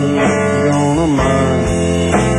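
Live band music: an instrumental stretch of a song carried by guitars, with a bending note about halfway through.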